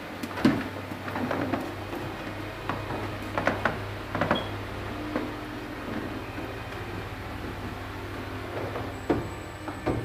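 Scattered knocks and footsteps of people walking across wooden floors, over a steady low hum.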